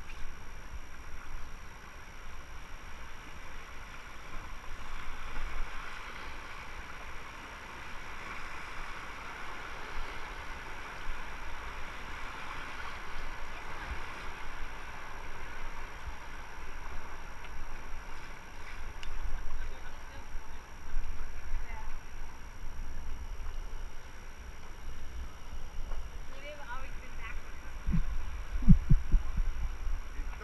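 River water rushing and splashing around an inflatable raft running through riffles, a steady hiss that swells in the middle, over a low rumble of wind on the microphone. A few knocks come near the end.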